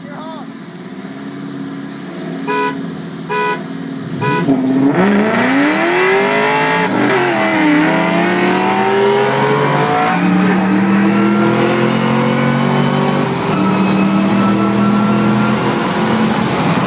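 Three short car-horn beeps about a second apart signal the start. Then a Ford Mustang Cobra's engine, heard from inside the car, launches at full throttle and accelerates hard, its pitch climbing in each gear and dropping back at three upshifts about three seconds apart.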